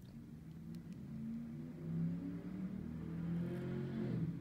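A quiet, low engine-like drone, growing louder over the first two seconds and rising slightly in pitch, typical of a motor vehicle accelerating in the background.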